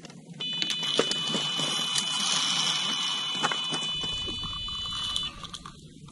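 Electronic carp bite alarm sounding one continuous high-pitched tone for about five seconds: a fish running with the bait and taking line. The tone cuts off about a second before the end, as the rod is lifted off the alarm.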